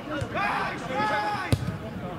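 A single sharp thud of a football being kicked about one and a half seconds in, over players' shouts across the pitch.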